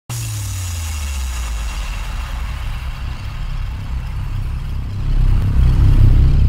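Sound design for an animated logo intro: a deep, steady rumble with a high hiss that fades over the first few seconds, swelling louder about five seconds in.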